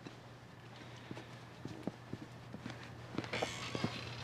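Faint footsteps on a hard floor: a few light, irregular steps, with a soft rush of noise near the end.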